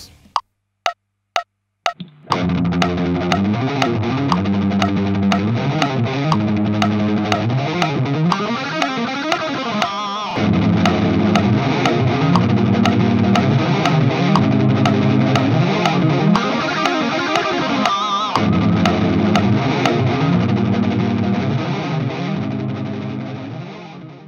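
Four metronome count-in clicks half a second apart, then an electric guitar riff played through BIAS FX 2 amp-modelling software and recorded into its looper. The loop comes round every eight seconds, and from about ten seconds in a second guitar part is overdubbed on top of the repeating loop, making it fuller and louder before it fades out at the end.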